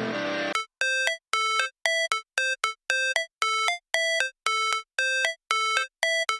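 A ringtone-like electronic chime melody of short, separate notes with silent gaps between them, about two or three a second. It follows the tail of loud rock music that fades out in the first half second.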